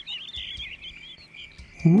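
Small songbirds chirping in a quick run of short, high chirps. A steady high cricket trill takes over in the second half.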